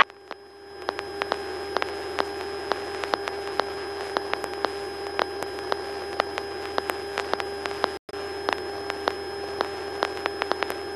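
Electrical noise on a light aircraft's intercom audio feed with no one talking: a steady hum at one pitch, broken by sharp irregular clicks about three times a second. The sound cuts out completely for an instant about eight seconds in.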